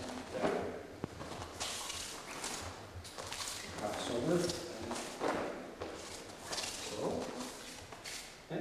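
Bare feet shuffling and thudding on a training mat, several separate steps and landings, with a few short, indistinct voice sounds between them.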